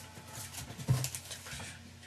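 Handling noise on a handheld microphone: faint rustles and clicks, with one sharp bump about a second in.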